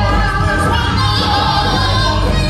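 A small gospel vocal group singing together into handheld microphones, amplified through the church's sound system. Sustained, wavering sung notes sit over a steady low bass accompaniment.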